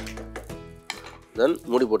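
Metal spoon stirring chicken curry in a pan, scraping and clinking against the pan, over background music. A voice comes in loudly near the end.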